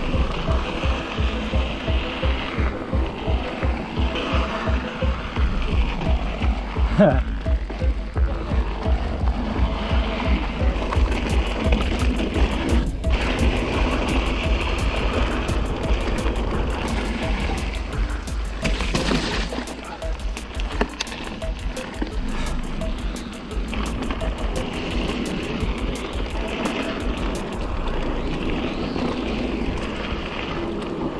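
Mountain bike riding down a dirt singletrack, heard from a camera on the rider: wind buffeting the microphone and the bike rattling over the rough trail as a steady, pulsing rumble, with a run of fast, regular clicks through the middle.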